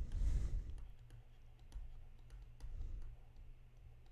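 Faint, irregular clicks and taps from the computer input device as handwriting is drawn on screen, over low room noise that fades after about a second.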